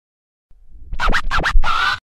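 DJ record scratching in a short intro sting: four quick back-and-forth scratches about a second in, then a longer, louder one that cuts off suddenly.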